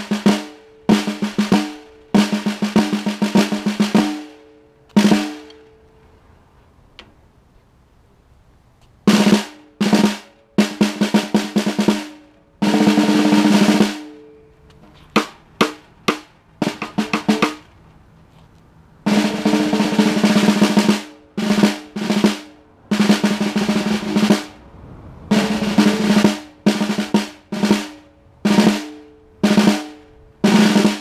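Restored 1950s Gretsch Dixieland three-ply snare drum, with 12-strand snare wires, played with wooden sticks in its first play test. Short phrases of rolls and strokes are separated by pauses, and the head rings with a clear pitched tone after each phrase.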